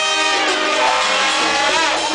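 Salsa band playing live, with horns holding notes over congas and drum kit, and one note sliding upward near the end.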